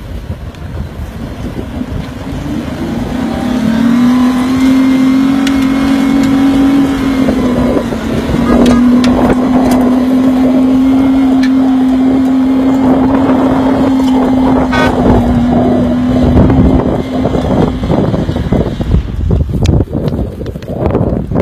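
A 4x4 SUV's engine held at high revs as it powers up a steep dirt slope. It is a steady drone that builds over the first few seconds, dips briefly about eight seconds in, and fades off near the end, with a crackle of tyres churning loose dirt through the second half.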